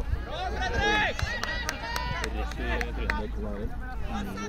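Several voices shouting and calling out at once across an outdoor pitch as players run in a quadball game, with a few sharp clicks in the middle and a low rumble underneath.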